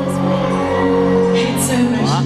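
Amplified live concert music in a large hall: held, sustained chords, with a few short high shrieks from the audience near the end.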